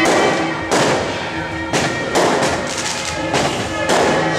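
Firecrackers going off in a run of irregular sharp bangs, with traditional music playing faintly underneath.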